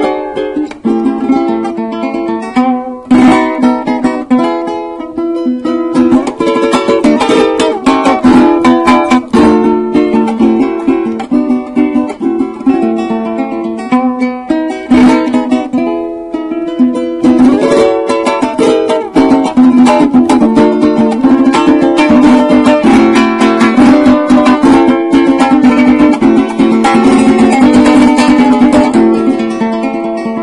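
Venezuelan cuatro played solo: a quick plucked melody mixed with strummed chords, all in a fairly high register with no bass below.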